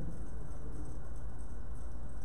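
Steady low hum and room noise with no speech or other events.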